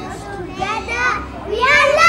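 Young children's voices calling out excitedly, swelling into loud shouts near the end.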